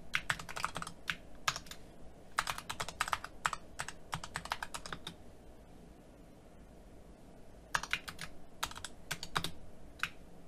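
Typing on a computer keyboard: quick runs of key clicks, broken by a pause of about two seconds past the middle before a last run of keystrokes.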